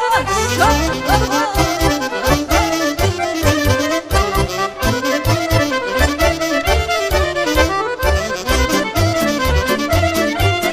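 Romanian folk music (muzică populară) played live by a band: an instrumental passage with a fast, ornamented lead melody over a steady drum beat.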